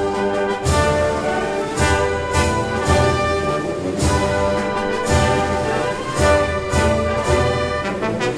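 A full wind band playing a march: brass leads, with woodwinds and regular percussion strokes beneath.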